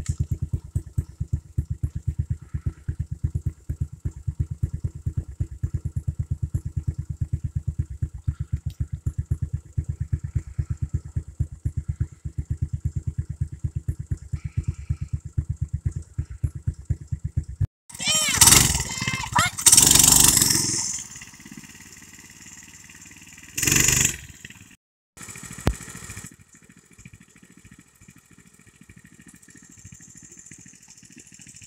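A small engine idling close by with an even, rapid chug, stopping abruptly about eighteen seconds in. After that come loud, irregular bursts of shouting voices.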